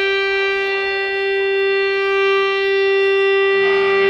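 One amplified note held steady as a drone by a live band, rich in overtones, with a lower note joining near the end.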